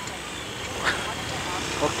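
Bajaj Pulsar motorcycle running on the road, its engine hum under steady wind and road noise at the rider's position, with a couple of short voice sounds about a second in and near the end.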